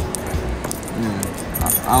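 Busy shopping-mall background: scattered voices with light metallic clinking over a low steady hum.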